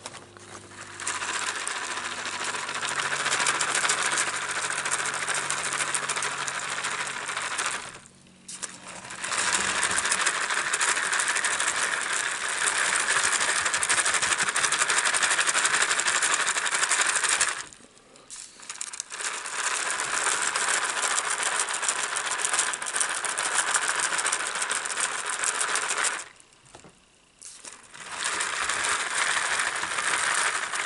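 A white cup handled right against the microphone, making a dense, rapid scratching and rattling. It comes in stretches several seconds long, broken by short pauses about eight, eighteen and twenty-six seconds in.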